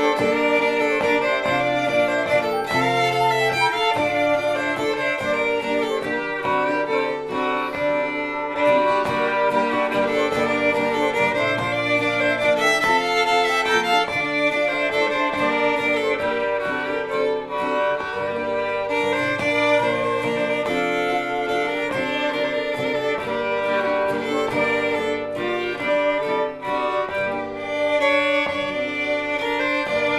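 Fiddle and acoustic guitar playing a tune together: the bowed fiddle carries the melody over the guitar's accompaniment, without a break.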